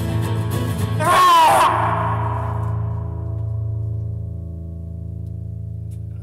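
Two acoustic guitars strumming, then a short loud cry with a rising pitch about a second in, after which the closing chord of the song rings on and slowly dies away.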